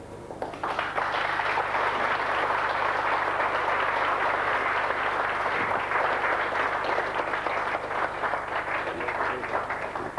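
Audience applauding: many hands clapping in a dense, even patter that swells up about half a second in, holds steady, and thins out near the end.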